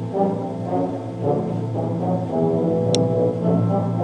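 A school concert band (symphonic wind ensemble) playing: held low brass notes from the tubas under woodwind and brass lines that move from note to note. A brief sharp click sounds about three seconds in.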